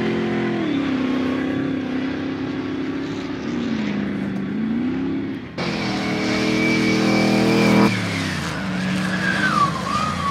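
Off-road competition 4x4's engine revving hard, its pitch rising and falling as it accelerates and lifts off. About halfway through the sound jumps abruptly to a louder, brighter engine note, which drops away again near the end.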